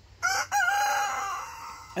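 A rooster crowing once: a short opening note, then a long held note that fades away.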